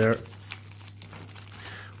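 Thin clear plastic packaging bag crinkling as it is handled and a cable is drawn out of it, a soft continuous crackle.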